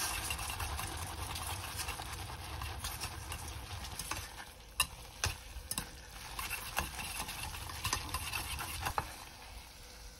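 Chopsticks stirring and tossing black bean noodles with their thick sauce in a stainless steel pot over a lit gas burner: a steady wet, sticky stirring noise with the sauce sizzling, and a few sharp clicks of the chopsticks against the pot around the middle.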